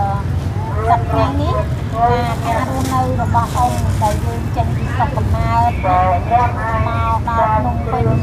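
Continuous talking over a steady low background rumble.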